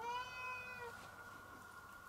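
A domestic cat meowing once, a single call just under a second long.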